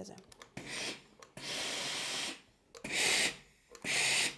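Steam iron puffing bursts of steam while pressing open a collar's seam allowances on a wooden tailor's pressing block: a series of hissing bursts, one about a second long in the middle of several shorter ones.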